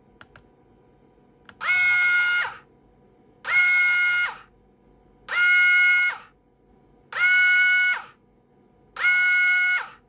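A new, not-yet-run-in JK Hawk 7 FK-type slot car motor spun up at 12 volts on a motor analyser during an acceleration test. There are five runs, each a high whine that rises, holds steady for about a second, then falls away, repeating about every two seconds.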